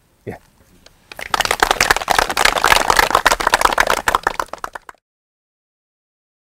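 Audience applauding: a dense patter of many hands clapping that starts about a second in, lasts about four seconds and is cut off abruptly.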